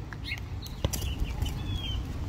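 Outdoor street ambience: a steady low rumble of wind on the microphone, with scattered footstep clicks and a short, high bird chirp near the end.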